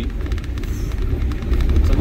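Vehicle on the move: a steady low rumble of engine and tyres, with scattered small knocks and rattles from a rough road.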